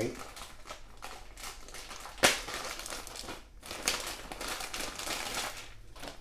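Thin plastic packaging bag crinkling and rustling as it is handled and pulled off a network switch, with one sharp click a little over two seconds in.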